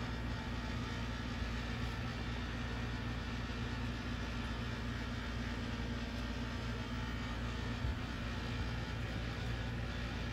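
A steady low hum with an even hiss of room noise, unchanging throughout, with one faint bump about eight seconds in.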